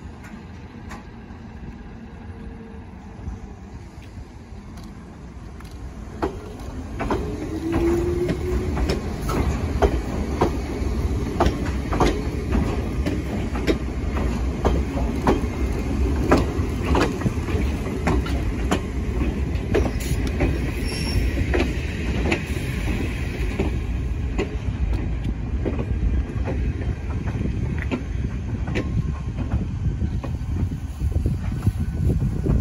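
Nagano Electric Railway 3500 series electric train moving off and passing close by. Its loudness builds from about six seconds in, then its wheels clatter over rail joints and points in a long run of sharp clicks over a steady low rumble, with a brief rising tone as it gets under way.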